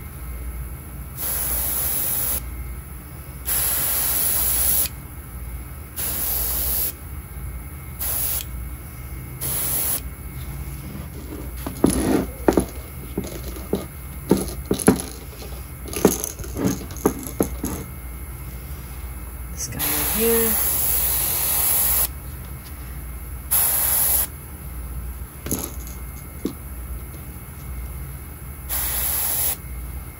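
Airbrush spraying paint in about eight short bursts of hiss, each half a second to two seconds long and spread out with pauses between them. In the middle stretch, between the bursts, there is a run of clicks and metal clatter from the clamp-style lure holders being handled and moved. A steady low hum runs underneath.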